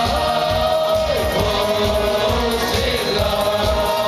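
Music: a choir singing a slow melody in long held notes that slide between pitches, over a steady rhythmic backing beat.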